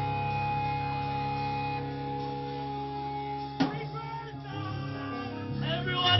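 Live band playing: electric guitar holding long, ringing notes, with a single sharp hit about three and a half seconds in. A shouted vocal comes in near the end.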